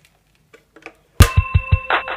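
A few faint clicks as a telephone handset is picked up, then, about a second in, telephone hold music starts suddenly: an electronic tune with a steady beat, thin and cut off in the treble as it comes down the phone line.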